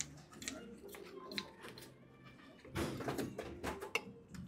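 Playing cards being dealt by hand onto a felt blackjack table: a series of short clicks and snaps as cards are drawn, slid and flipped, busiest about three seconds in.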